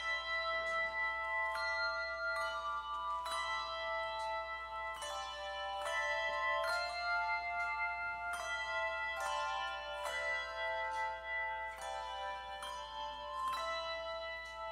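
Handbell choir playing a slow hymn: chords of ringing bells struck at a steady pace, a new one about every second, each ringing on under the next.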